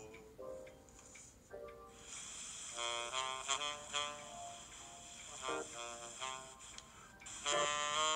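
Saxophone playing an instrumental solo of quick, changing notes, coming in about two seconds in after a few sparse piano notes. It is heard over a video call through a tablet's speaker.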